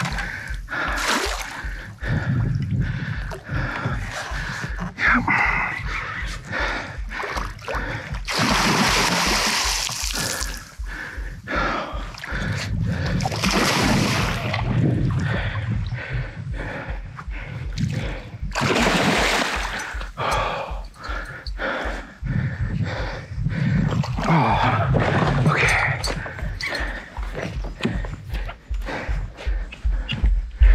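A hooked musky thrashing and splashing at the side of a kayak as it is brought to the net: irregular bursts of splashing and sloshing water, the heaviest about eight to ten seconds in and again near the middle.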